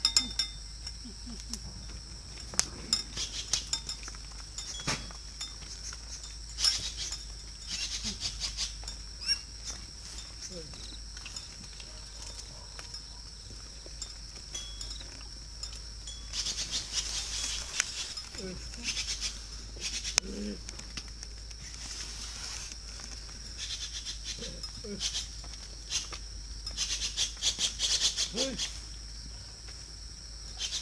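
A wooden cattle bell (mõ) hung on a water buffalo's neck clacking in irregular clusters as the herd moves, over a steady high chirring of crickets.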